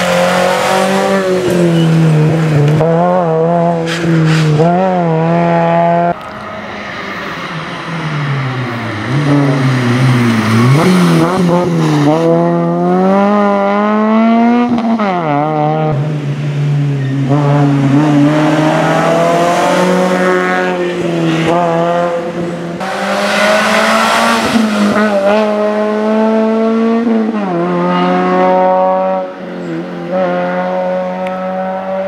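Rally car engines at full throttle, the engine note rising and then dropping again and again with gear changes and lifts, cut together from several cars passing one after another. The first few seconds are a Suzuki Swift rally car.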